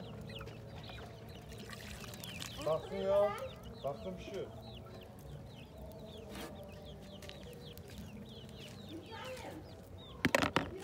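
Chickens clucking and calling, with a louder run of calls about three seconds in and many short, high chirps throughout, over a few sharp pops from the wood fire.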